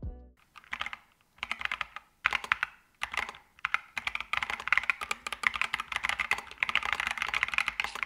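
Typing on a Drop OLKB Planck V7 40% mechanical keyboard with tactile switches in a polycarbonate case: short bursts of keystrokes at first, then steady, fast typing from about four seconds in.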